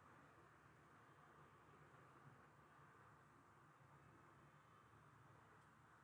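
Near silence: faint steady room tone or recording hiss.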